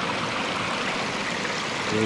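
Water spilling steadily over a beaver dam, dropping about half a metre from the pond to the stream below.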